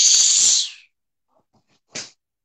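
A girl's forceful breathy hiss of air pushed out through her teeth, lasting under a second, followed by a brief faint rustle near the end.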